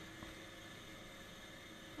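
Faint steady hiss with a low hum, and one small click about a quarter second in.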